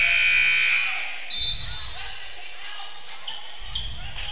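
A gymnasium buzzer sounds for about a second at the start, followed by a short whistle blast, over the echoing hubbub of a basketball gym heard through a radio broadcast.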